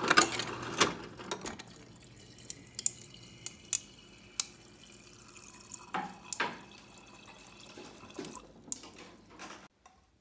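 Ice cubes from a Whirlpool refrigerator's door dispenser clattering into a glass, thinning to a few single cubes clinking in. About six seconds in come two knocks as the glass moves over, then a faint stream of dispenser water running into the glass that cuts off suddenly near the end.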